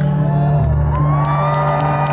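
A live band holds a sustained chord after the vocal line ends, while a concert crowd cheers and whoops over it.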